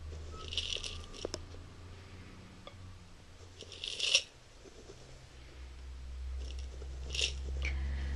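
Hand-lampworked glass pieces tumbling and falling inside a kaleidoscope's object chamber as it is turned. Several brief clusters of light clinking and rattling, the loudest about four seconds in, over a low steady hum.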